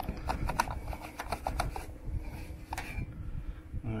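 Wet, soapy sponge scrubbing around a vehicle's fuel cap and filler recess: a quick run of short rubbing squeaks and clicks through the first two seconds and one more near three seconds, over a low steady rumble.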